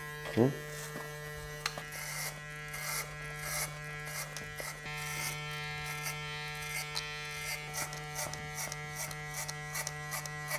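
Cordless hair clipper with a number-three guard buzzing steadily as it cuts up through the hair, with short rasps where the blade bites.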